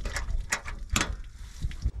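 Several sharp metallic clicks and knocks from the latch and door of a Zimmatic pivot control panel being worked by hand, over a low rumble.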